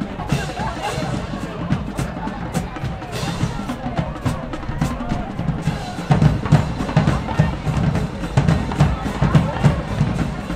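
Marching band drumline playing a cadence: bass drums and snares beating a steady rhythm. The low drum hits grow heavier about six seconds in.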